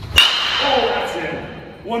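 Two-piece DeMarini The Goods BBCOR bat's alloy barrel striking a pitched baseball hard about a quarter second in: one sharp crack with a high ring that fades over about a second.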